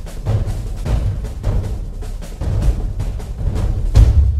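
Intro theme music for a news programme, driven by heavy, rapidly repeated drum and timpani hits, with the loudest hit right at the end.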